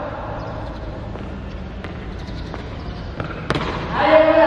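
A few scattered knocks of shoes stamping on a hard tiled floor, the loudest about three and a half seconds in, over a low steady room rumble.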